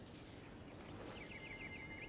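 Faint outdoor ambience in an animated film's soundtrack, a soft steady hiss. About a second in comes a short, high chirping trill of about six quick notes.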